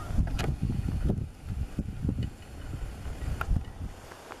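Wind buffeting the microphone: an irregular low rumble that comes in gusts, with a couple of faint short clicks.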